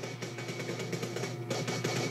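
Action-film soundtrack playing quietly from the fight scene: faint music over a steady low hum.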